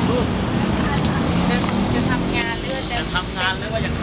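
Busy street ambience: a steady rumble of motor traffic, with people talking nearby in the second half.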